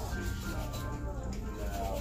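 Rubbing and handling noise from a handheld phone being moved, over a steady low rumble, with faint background music.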